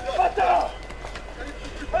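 Raised voices of men shouting amid a street clash between riot police and protesters, loudest in the first half-second, then a lower din of voices.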